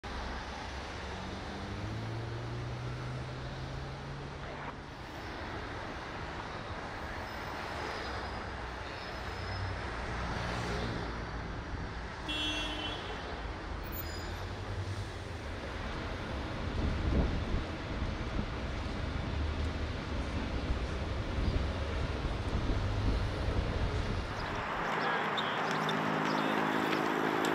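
City street traffic: a steady rumble of passing cars and buses, with an engine drone in the first few seconds, a brief high-pitched squeal about twelve seconds in, and a louder vehicle passing around seventeen seconds. Near the end the sound shifts to a lighter, hissier outdoor background.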